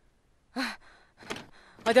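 A woman's short sighing exclamation, falling in pitch, about half a second in, followed by a faint breath. Speech begins near the end.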